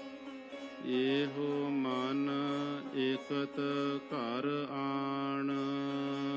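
Gurbani kirtan: a voice singing a drawn-out, ornamented line of the hymn over a steady held drone. The voice comes in about a second in and falls away near the end, leaving the drone alone.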